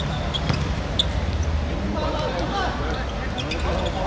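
A football being kicked during play, a few sharp knocks, with players' calls and a steady low outdoor rumble behind.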